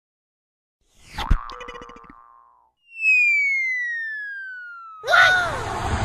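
Sound effects of an animated logo sting. About a second in comes a sharp hit with ringing tones that die away, then a long whistle-like tone that falls steadily in pitch. Near the end a loud burst of noise with swooping tones takes over.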